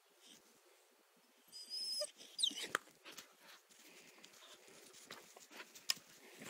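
Blue nose pit bull puppy whining: a high, steady whine about a second and a half in, then a quick falling whimper, followed by scattered light clicks and a sharp tick near the end.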